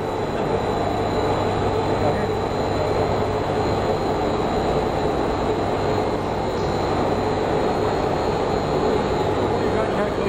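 Steady running noise of brick-plant machinery, with a constant low hum and a thin high whine.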